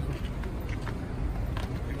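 A steady low rumble of a vehicle engine idling, with faint clicks and background noise from the gathered group.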